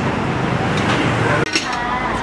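Busy street-food stall ambience: background voices over a steady low rumble, with occasional clinks of dishes. The sound briefly drops out about one and a half seconds in.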